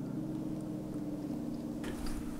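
A steady low hum made of several held low tones, one of which dips slightly in pitch about halfway through.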